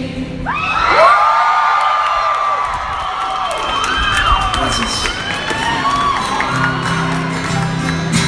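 A crowd of fans screaming and cheering, with high-pitched shrieks and whoops that break out about half a second in and carry on throughout.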